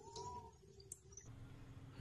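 Near silence, with a few faint clicks and a faint short tone near the start.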